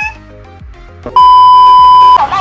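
A loud, steady test-tone beep of the kind played with television colour bars. It starts sharply about a second in and holds for about a second. Before it, a cartoon voice finishes a rising exclamation and a few quiet musical notes play.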